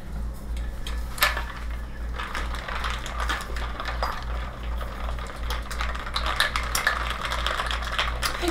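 Shaker bottle being handled and its lid fitted on: a sharp knock about a second in, then a run of small clicks and rattles.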